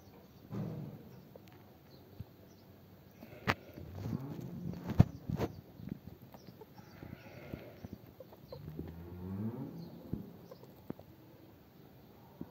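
Farm animals calling in several drawn-out, wavering calls, mixed with a few sharp clicks, the loudest about five seconds in.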